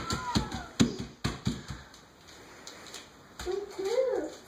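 A toddler's bare feet slapping on paper laid over a wooden floor: a few soft, quick steps in the first second or so, then quieter. A short high voice sound comes at the start, and a voice returns near the end.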